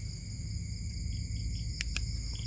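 Night-time insect chorus: several steady high-pitched trills running together over a low rumble, with two short clicks near the end.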